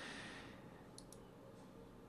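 Near silence with two faint computer mouse clicks close together about a second in.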